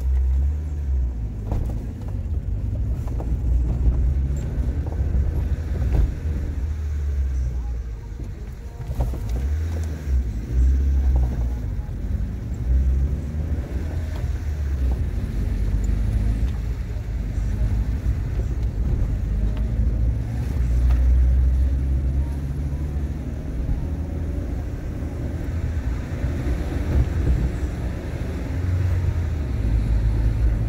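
A car driving slowly: low engine rumble and road noise, the engine note rising and falling as it moves along.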